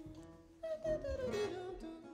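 Informal singing of a note that slides down in pitch and then holds, coming in about half a second in, over soft acoustic guitar.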